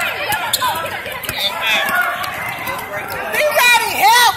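Sounds of a basketball game in a gym: voices of players and spectators calling out over footsteps of players running on the hardwood court.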